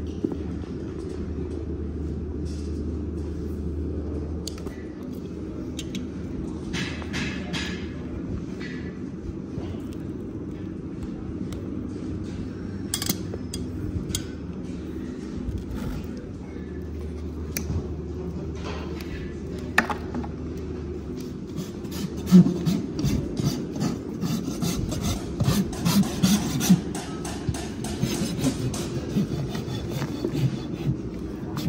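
Hoof nippers snipping through a pony's overgrown, hard hoof wall and sole in scattered sharp cuts. In the last third a farrier's rasp files the hoof in quick rhythmic strokes. A steady low hum runs underneath.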